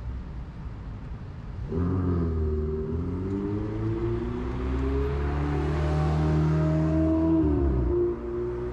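A motor vehicle on the highway accelerating past, its engine note coming in suddenly about two seconds in and climbing in steps as it builds to its loudest near six seconds, then dropping away near the end.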